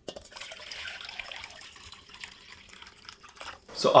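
Water poured from a pot into a stainless-steel coil condenser bucket, a steady splashing pour that stops shortly before the end.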